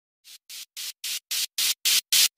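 Intro of a Hindi DJ remix: short, evenly spaced bursts of white noise, about four a second, each louder than the last, forming a rising build-up.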